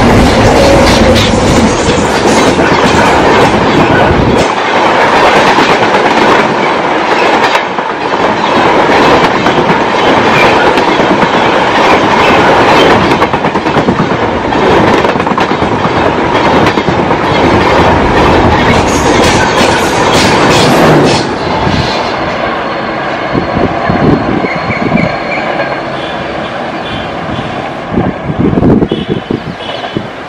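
Express train hauled by a WAP 7 electric locomotive passing close at speed: loud rushing noise with wheels clattering over the rail joints. About two-thirds of the way through the noise drops to quieter rail sounds with some clicks.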